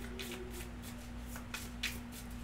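Tarot cards being shuffled off-camera: a soft papery rustle with a few light flicks, the sharpest near the end, over a steady low electrical hum.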